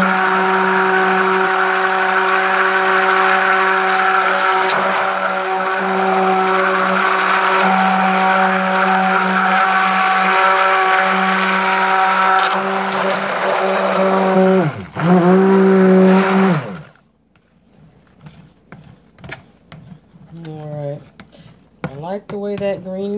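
Stick blender running steadily in soap batter, a loud, even motor hum, as it mixes green chrome oxide colorant into the batter. About 15 s in the motor briefly drops in pitch and comes back up, then it switches off about 17 s in, leaving only small handling clicks.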